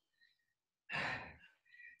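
A woman's short breathy exhale, a sigh, about a second in, during a dumbbell exercise; the rest is near silence.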